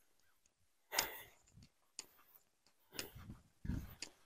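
Quiet background with a few faint, brief knocks and rustles: about one second in, about three seconds in and again shortly before the end.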